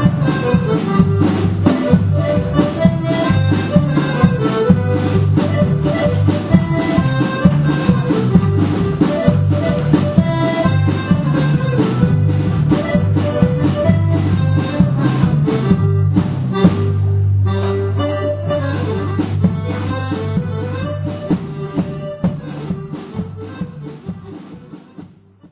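Traditional folk dance tune led by an accordion, with a steady beat, fading out over the last few seconds.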